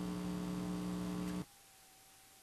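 Steady electrical mains hum in the studio microphone audio, with no one speaking. It cuts off abruptly about one and a half seconds in, leaving near silence with a faint thin steady tone.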